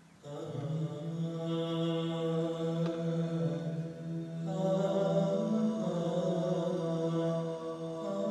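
Live trio music of oud, electric bass and percussion: a slow passage of long held notes that comes in right after a near-silent pause, moving to new notes about four and a half seconds in.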